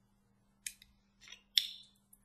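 A few short, sharp clicks and scrapes of small hard objects near the microphone, the loudest about one and a half seconds in with a brief ring after it.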